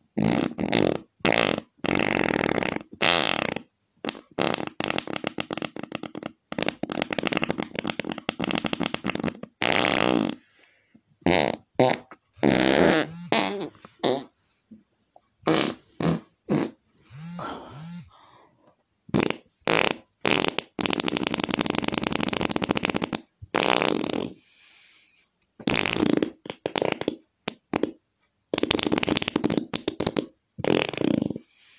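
A string of farts, about fifteen one after another with dead-silent gaps between: some short pops, several long buzzy ones lasting two to three seconds.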